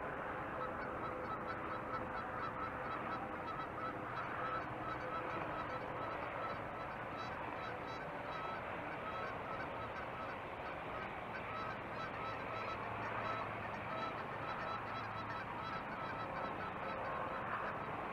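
Steady outdoor background noise with faint, repeated calls of distant birds running through it.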